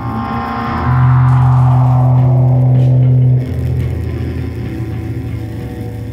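Live avant-rock trio with bassoon and drums playing a dense, loud passage. A cluster of tones falls slowly in pitch over a steady low drone, and a louder low tone holds from about a second in until about three and a half seconds in.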